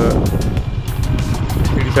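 Motorcycle engine running steadily as the bike rides along, with wind rushing over the microphone.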